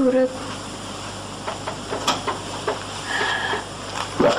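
A pause in spoken dialogue: a voice trails off at the start, then a steady low hum and tape hiss remain, with a few faint ticks and a brief held tone a little after three seconds.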